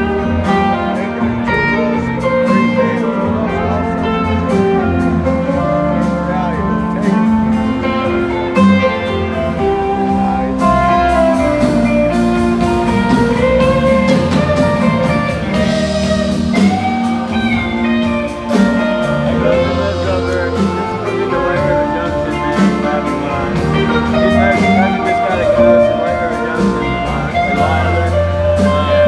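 Live rock band playing an instrumental passage of a slow ballad, with electric guitar lead lines over sustained bass and keyboards, heard from the audience in a large hall.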